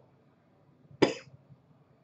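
A single short cough about a second in, against the quiet of a small room.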